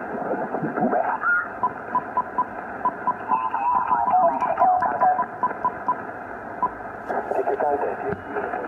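Shortwave transceiver receiving the 40-meter amateur band in lower sideband while being tuned up the band: steady static hiss with garbled, off-tune voices of distant stations. A string of short, evenly spaced beeps at one pitch, about three a second, runs through the middle.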